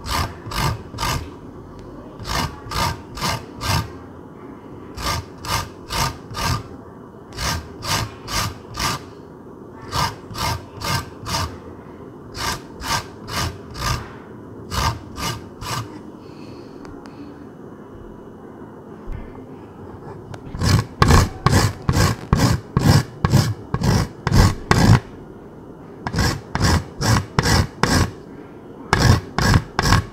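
Hard, frozen lime rind being grated on a hand grater: quick rasping strokes in runs of four or five, about four a second. There is a pause of a few seconds just past the middle, and the strokes come louder after it.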